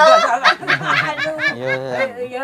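Human laughter, chuckling in short repeated bursts.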